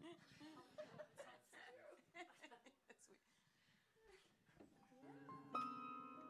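Faint murmuring and laughter in a quiet room. About five seconds in, a soft sustained chord on an instrument begins the song.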